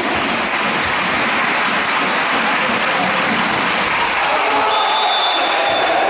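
Spectators applauding in an indoor sports hall: dense, steady clapping, with a thin high tone briefly near the end.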